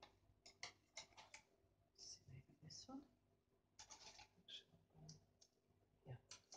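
Faint, irregular scratching strokes in near silence, with a faint murmured voice about two seconds in.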